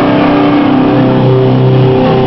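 Loud distorted electric guitars from a live hardcore band holding chords, with the drums dropped out.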